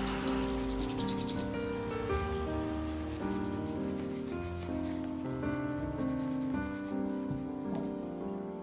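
A cloth being rubbed in quick back-and-forth strokes over the leather upper of a Regal cap-toe oxford during shoe polishing. The rubbing fades out in the second half. Piano background music plays throughout.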